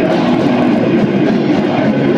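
Black metal band playing live: a loud, unbroken wall of distorted electric guitars and drums.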